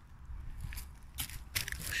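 A few short crunches and crackles of dry leaves and twigs on the forest floor.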